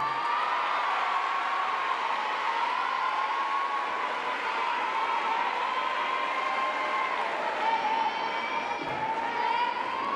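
Arena audience applauding and cheering steadily, with a long held tone wavering near one pitch over the clapping.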